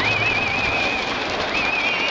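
High warbling whistles over the steady din of a packed cheering section: one wavering whistle for about a second, then several whistles together from about a second and a half in. They are typical of the finger whistling (yubibue) of Okinawan fans.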